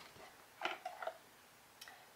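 A few soft clicks and rustles of packaging being handled as a cardboard product box is taken out of a shopping bag.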